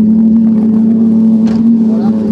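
Mitsubishi rally car's engine running loud and close at a steady pitch.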